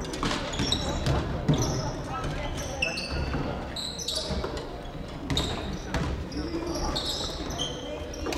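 Badminton being played on several courts in a large wooden-floored sports hall: sharp racket hits on shuttlecocks, short high shoe squeaks on the floor and the chatter of players, all echoing in the hall.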